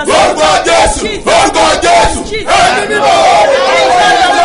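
A man and a woman crying out loud prayer at the same time, their voices overlapping in continuous impassioned shouting.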